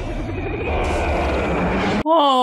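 Film soundtrack of an alien spacecraft coming down: a heavy low rumble with a rushing roar that swells about a second in, cut off abruptly at the end.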